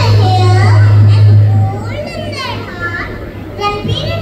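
A young girl's high voice amplified through a handheld microphone and PA, rising and falling in pitch, over a loud low hum that stops a little under two seconds in.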